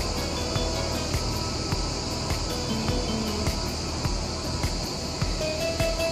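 Steady high buzzing of cicadas in the pines, with music playing over it.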